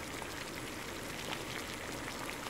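Chicken and papaya broth boiling in a wok while a wooden spatula stirs it: a steady bubbling hiss with small scattered pops and ticks.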